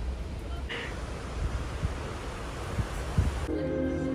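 Wind rushing over the microphone and the wash of the sea on the open deck of a moving cruise ship, with a couple of low buffets near the end. About three and a half seconds in it cuts to soft music.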